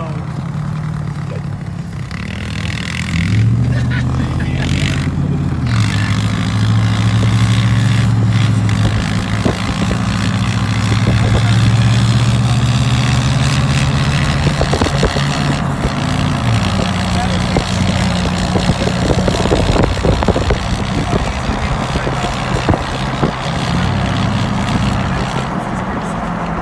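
Vehicle engine drone mixed with road and wind noise. Its pitch steps up a few seconds in, holds, then drops back about two-thirds of the way through.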